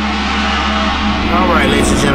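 Road and engine noise inside a moving car's cabin, a steady hum and rush, with background music still faintly under it. A voice starts near the end.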